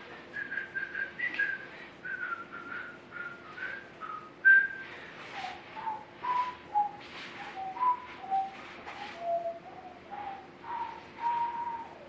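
A person whistling a tune in short separate notes, the melody dropping to a lower range about five seconds in.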